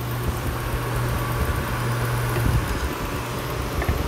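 A fan running with a steady low hum, mixed with irregular low rumbling from the phone being handled and moved.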